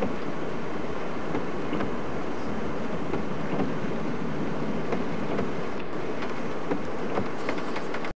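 Steady road noise heard from inside a moving car on rain-soaked streets: tyres on wet tarmac and the car's running, with faint scattered ticks.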